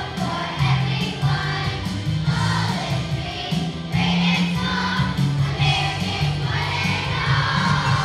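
Children's choir singing together over an instrumental accompaniment with a steady bass line.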